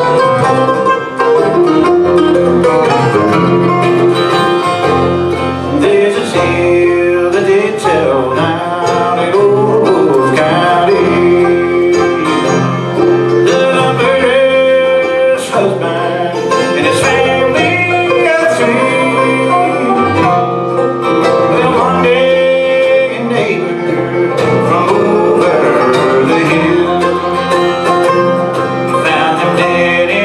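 A bluegrass band playing live on five-string banjo, mandolin, acoustic guitar and electric bass, an instrumental opening before the first sung verse.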